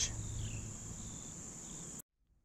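Crickets singing in a steady, high-pitched chorus, with two faint short descending chirps over it. The chorus cuts off suddenly at the end.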